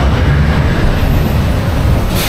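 Steel roller coaster train rolling slowly along its track into the station: a steady low rumble of the wheels on the rails.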